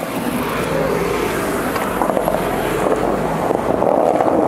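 Skateboard wheels rolling over street asphalt: a steady rolling noise that grows louder as the board picks up speed.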